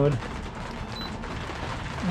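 Rain pattering steadily on a boat's cockpit enclosure, a dense crackle of fine drops, with one short high electronic beep about a second in.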